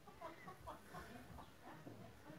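Faint bird calls: a quick run of short clucking notes, about five a second.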